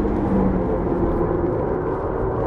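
Toyota Vitz GRMN prototype's supercharged 1.8-litre four-cylinder engine heard from inside the cabin under hard driving, its note holding fairly steady, over road and tyre noise.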